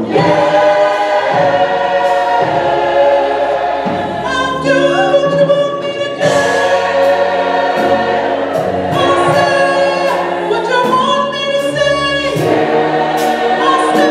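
Mixed-voice gospel choir singing in harmony, holding long chords with short breaks between phrases.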